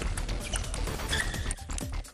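Background music, with a scatter of short sharp clicks over it.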